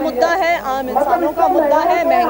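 Speech only: a woman speaking Hindi without a break.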